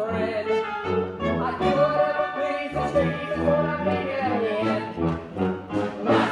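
Live pit orchestra playing held chords, with brass prominent.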